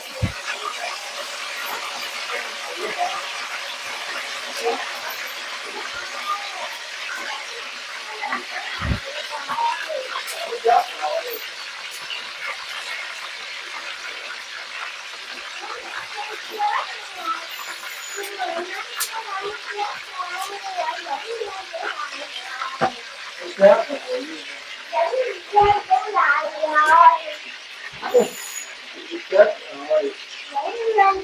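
Chicken pieces frying in hot oil in a wok: a steady sizzle, with a few knocks against the pan.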